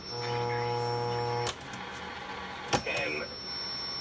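Vintage 1970 Buick Skylark AM/FM car radio being tuned by hand: a steady electrical buzz from its speaker cuts off abruptly after about a second and a half. Faint static follows, with one sharp click near the end.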